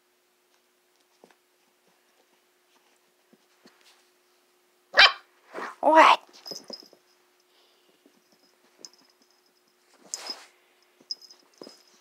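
Catahoula Leopard Dog puppy barking: two short loud barks about five and six seconds in, then a shorter, fainter sound around ten seconds.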